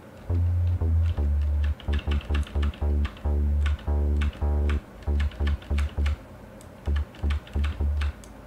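Deep, overdriven synth bass from the Diversion software synthesizer, played as a run of short and held notes in an uneven rhythm. Each note starts with a sharp, bright attack that quickly darkens as the envelope-modulated low-pass filter closes.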